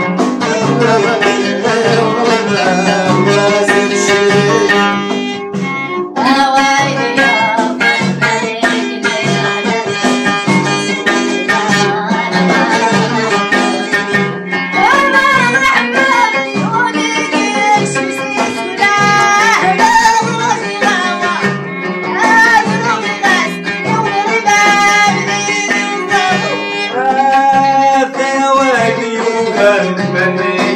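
Middle Atlas Amazigh folk music: a lotar (plucked Amazigh lute) played over frame drums beating a steady rhythm. From about halfway through, a woman sings long, sliding held notes over it.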